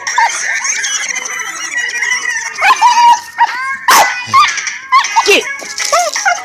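Dogs yipping and whining while playing tug-of-war over a stick, in short cries that drop sharply in pitch.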